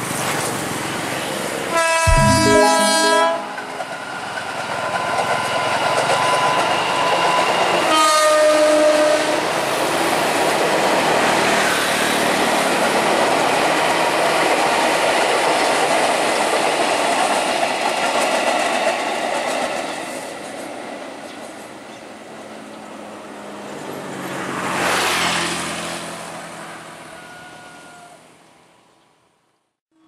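KRL commuter electric train sounding its horn, one long blast about two seconds in and a shorter one around eight seconds, then running past with a steady noise of wheels on rail. The running noise fades, swells briefly again near the end, and then fades out.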